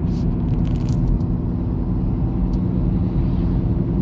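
Steady low rumble of a car driving on an asphalt road, heard from inside the cabin: engine and tyre noise at a constant speed.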